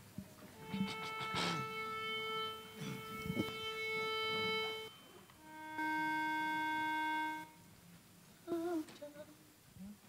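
Two sustained reference notes played from a phone to give an a cappella group its starting pitch: a higher note held about four seconds, then after a short gap a lower note held about a second and a half, both perfectly steady and starting and stopping abruptly.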